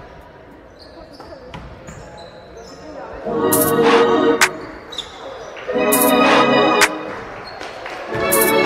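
A basketball bouncing on a hardwood gym floor amid game noise, then loud background music comes in twice, each a sustained chord about a second long, starting about three seconds in.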